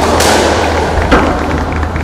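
Squash ball struck by a racket and hitting the court walls, sharp cracks that ring on in the enclosed court, with one loud knock about a second in. A steady low hum runs underneath.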